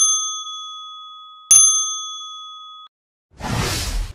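A logo-intro chime sound effect: two bright bell-like dings about a second and a half apart, each ringing on in several high tones. The second ring cuts off suddenly, and a short rushing whoosh follows near the end.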